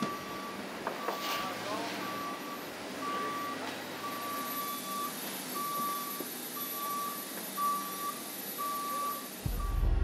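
Utility pickup truck's reverse alarm beeping, a single steady-pitched beep repeating roughly every three-quarters of a second while the truck backs up, over a steady hiss. Music starts near the end.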